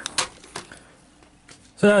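Two light clicks of hard plastic as the Hasbro Delta Squad Megazord toy is handled, the first sharper, about a fifth of a second in and again about half a second in, followed by a quiet stretch.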